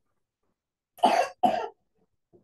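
Two quick coughs from a person, back to back about a second in.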